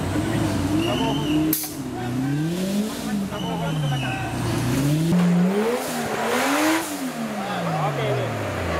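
Off-road competition 4x4's engine revving up and dropping back in slow swells, its pitch rising and falling several times. There is a sharp knock about one and a half seconds in and a brief noisy burst near the end of the last rise.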